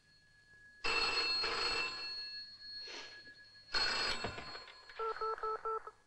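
Telephone bell ringing, two rings a few seconds apart, then four short quick beeps near the end.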